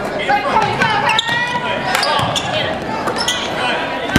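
Basketball game in a gymnasium: a basketball bouncing on the hardwood court amid players' and spectators' voices calling out, all echoing in the large hall.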